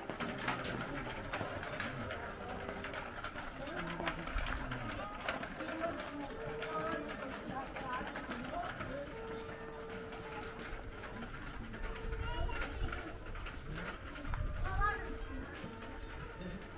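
Street ambience of passers-by talking, with music playing in the background: several held notes of about a second each from about six seconds in.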